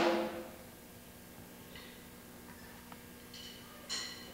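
A drum kit struck, its cymbal ringing away over the first second. Then a faint steady hum with a single light tick about three seconds in.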